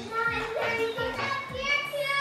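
Children's voices calling out over background music with long held notes.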